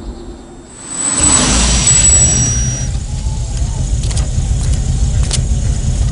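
A car on a road: a rushing swell of engine and tyre noise comes in about a second in, with a thin high whine over it at first. It settles into a steady low rumble, with a few sharp clicks near the end.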